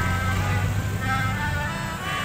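A group of melodicas (pianikas) playing a melody together in held, reedy notes, with a low steady hum underneath.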